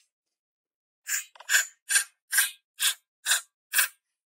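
Steel hammer striking a block of stone to split it: seven sharp blows about two a second, starting about a second in.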